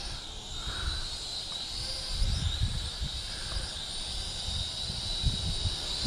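Small toy quadcopter's motors and propellers giving a steady high-pitched whine while it flies, with wind buffeting the microphone in irregular low gusts.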